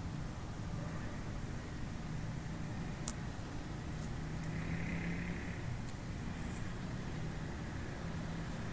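Steady low background rumble with a faint hum, broken by two short sharp clicks, one about three seconds in and one near six seconds.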